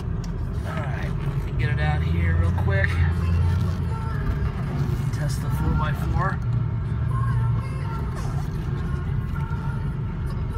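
A 2003 Ford F-350's 6.0 turbo diesel V8 running, heard from inside the cab as the truck pulls away and drives; its rumble swells about two seconds in and settles again. A car radio plays voices and music over it.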